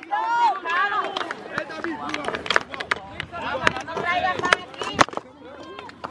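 Several voices calling and talking at once, with sharp knocks from the phone being handled; the loudest knock comes about five seconds in.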